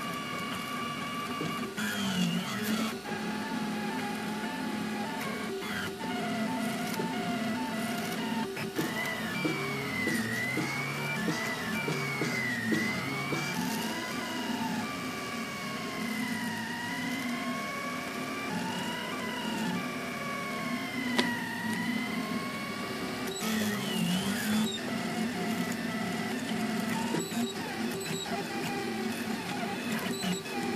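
Stepper motors of a Kossel Mini delta 3D printer whining as the print head moves, their pitch rising and falling in repeated arcs, over a steady hum from the hot end's cooling fan.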